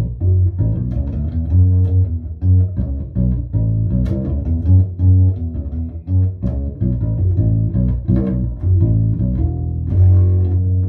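Small five-string headless fretless bass with a pear-shaped acoustic wooden body, tuned BEADG, played fingerstyle: a continuous run of plucked low notes, each with a light click of the string attack. Its sound is taken through a Fishman 301 piezo pickup together with a microphone.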